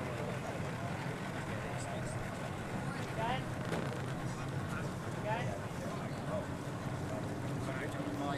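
Harbour ambience: a steady rush of wind and water with indistinct voices of the catamaran crews calling in the background.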